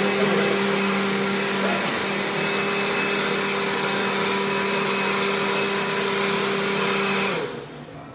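Countertop blender running at steady high speed, blending a mayonnaise, chile and shallot sauce. It is switched off about seven seconds in, and the motor winds down quickly.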